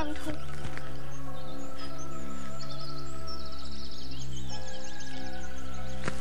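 Soft dramatic background score of held, sustained chords. Short, high, bird-like chirping trills repeat through the middle stretch.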